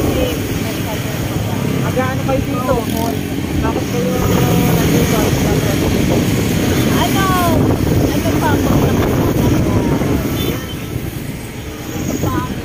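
Wind buffeting the microphone: a loud, rough low rumble that swells in the middle and eases near the end, with faint voices under it.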